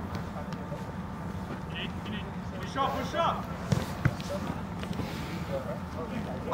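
Distant players shouting on an outdoor soccer pitch, with a couple of short knocks of the ball being kicked about three and a half to four seconds in, over a steady low background hum.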